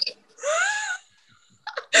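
A person laughing: one breathy, high-pitched laugh lasting about half a second that rises and falls in pitch, followed by a short quiet pause.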